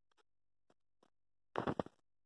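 Near silence with a few faint clicks, then a brief loud noise of several quick pulses near the end.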